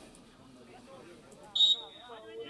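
A referee's whistle blown once, a short sharp blast on a single high steady tone about one and a half seconds in, over faint distant voices.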